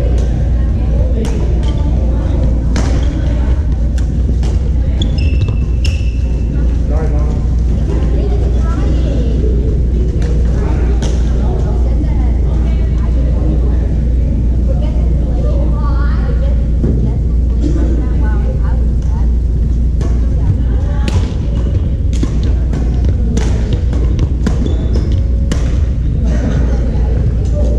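Indoor badminton: sharp racket-on-shuttlecock hits at irregular intervals and a few short shoe squeaks on the wooden floor, echoing in a large gym. Underneath runs a steady low rumble, the loudest thing throughout, with distant voices from other courts.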